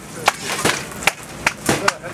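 Wooden rolling pin knocking and clacking on a stainless steel table top as paratha dough is rolled out: a quick, irregular run of sharp knocks, about three a second.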